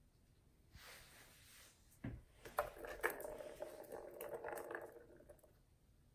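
A kitten batting the ball in a plastic tower-of-tracks cat toy: a thud about two seconds in, then the ball rolling and rattling around the plastic track for about three seconds before fading.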